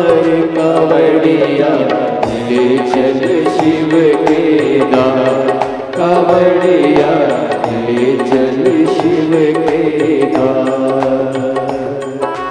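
Devotional Hindu mantra chanting, sung over music with a steady percussion beat and sustained drone-like tones.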